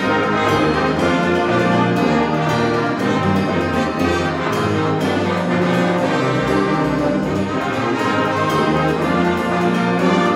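Live school wind band playing, with brass to the fore. The full ensemble comes in loudly at the very start and plays on steadily.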